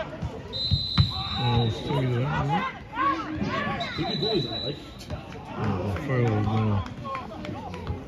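Players shouting on a football pitch, with two blasts of a referee's whistle: a long one about half a second in and a shorter one around four seconds. A thud of the ball comes about a second in.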